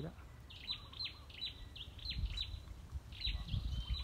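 Small birds chirping repeatedly: short, high calls that slide downward, about three a second, over a low rumble.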